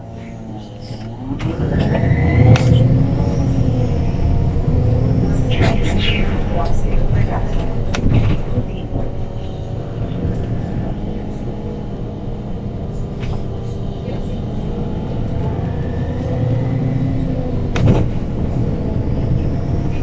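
Inside a MAN NL313F CNG city bus as it pulls away: its MAN E2876 natural-gas straight-six rises in pitch about a second in, then runs on steadily under load through the ZF Ecolife automatic gearbox, with low rumble. A few sharp knocks and rattles from the body come through at intervals.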